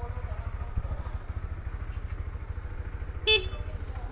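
Honda CB150X's single-cylinder engine idling steadily, a brand-new bike started cold and not yet warmed up. About three seconds in, its stock horn gives one short beep.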